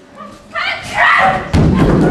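A performer cries out loudly, then lands with a heavy thump on a wooden stage floor as she drops from a ladder.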